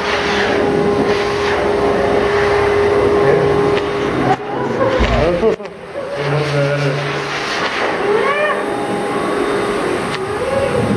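Pet grooming dryer blowing air through its hose onto a dog's coat: a loud, steady rush of air with a motor hum. The sound breaks off briefly about five seconds in, then the blowing resumes.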